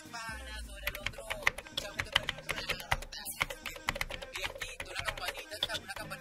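Computer-keyboard typing sound effect: a quick, irregular run of key clicks. It plays over quiet background music and goes with an on-screen comment-box animation.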